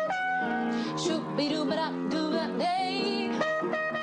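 Trumpet playing a short improvised jazz phrase: a run of separate notes with slides between them, and a quick wavering note about three seconds in.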